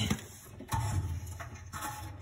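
A knock about a second in, then a steady low hum that stops near the end.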